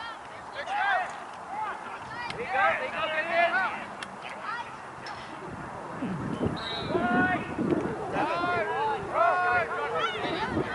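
Lacrosse players and sideline spectators shouting and calling out, several voices overlapping.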